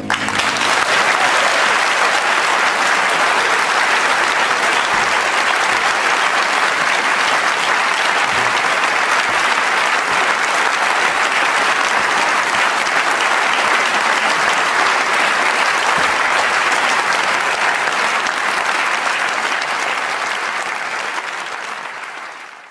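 Concert audience applauding, a dense, steady clapping that starts right as the last piano chord dies away and eases off near the end.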